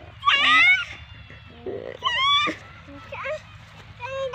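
A toddler's high-pitched babbling calls, three short squealing sounds with rising and falling pitch.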